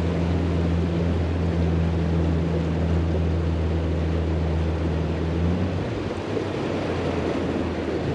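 Outboard motor pushing an aluminium fishing boat at steady speed, a low, even hum under the rush of wind and water along the hull. The motor's hum drops away near the end, leaving the water and wind noise.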